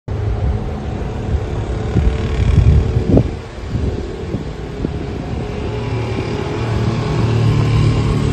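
Outdoor street noise: a steady low rumble with a few short knocks about two to three seconds in.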